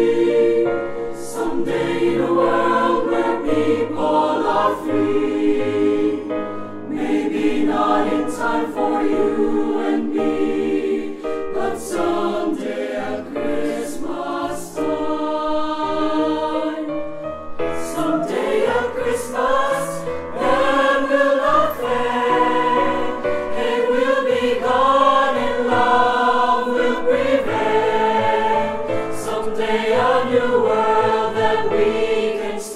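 Mixed choir of male and female voices singing a song in several-part harmony, the parts moving together with a low bass line beneath, continuous throughout.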